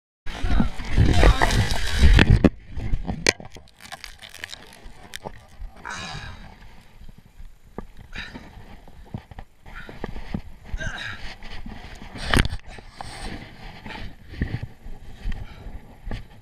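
Slowed-down replay of a mountain bike crash, the sound stretched and deepened: a loud rush of crash noise for about the first two seconds, then quieter low rumbling with scattered knocks and one sharp knock near twelve seconds in.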